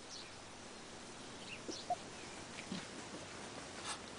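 A few faint, short calls from farm birds, scattered through a quiet outdoor background, with one slightly louder call about two seconds in.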